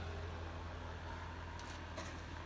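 Steady low hum of a powered-up Cincinnati CNC machine and its electrical cabinet, with a faint higher tone joining about halfway.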